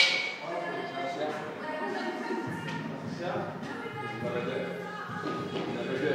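Background music and voices echoing in a large gym hall, opened by a single sharp clank with a short ring right at the start.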